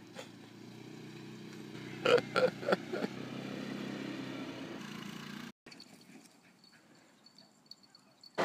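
Quad bike (ATV) engine running at low speed, a steady low drone, with a few short louder sounds about two to three seconds in. It cuts off suddenly a little past halfway, leaving only faint sound.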